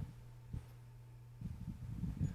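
Soft, muffled low thumps and rustles from a person walking and moving in vestments: a short one about half a second in, then a cluster near the end. Under them is a steady electrical hum from the church's sound system.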